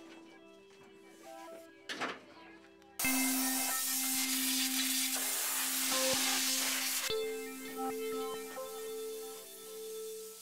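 Background music with sustained notes. About three seconds in, a loud hiss of compressed air from an air tool starts suddenly, runs about four seconds and cuts off.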